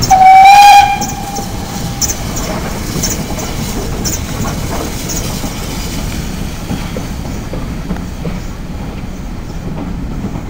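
GWR 'City' class 4-4-0 steam locomotive City of Truro giving one short, loud whistle blast of about a second right at the start, then its exhaust beats and the carriages' wheels running steadily as the train pulls past.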